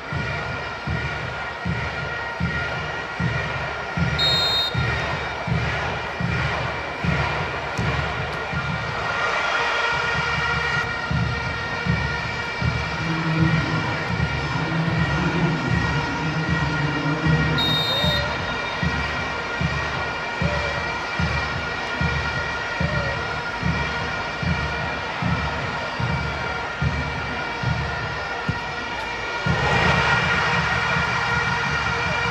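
Stadium crowd noise over a steady drumbeat of about two beats a second, with steady high tones held throughout.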